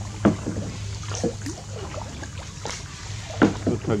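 Wooden oar working a small rowing boat, with a few short sharp knocks and splashes at uneven intervals over a steady low hum, and brief faint voices.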